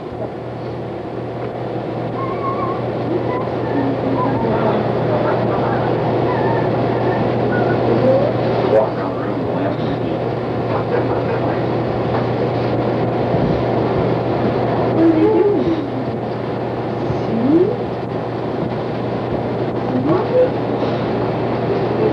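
A steady low electrical hum over constant hiss from an old home-video recording, with faint, indistinct voices now and then in the second half.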